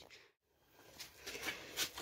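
Near silence, then a few faint clicks about a second in and again near the end.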